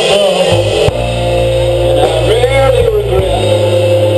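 A rock band playing live and loud: distorted electric guitar and bass hold a steady low drone under drum hits, and a voice sings sliding, bending notes over it.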